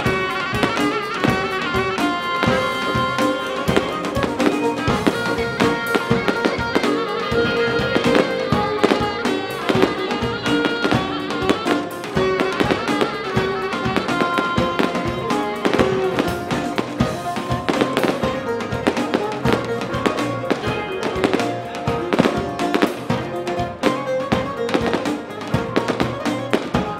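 Live band music with a steady, driving beat and a melody line over it, with sharp percussive strokes throughout and the crowd clapping along.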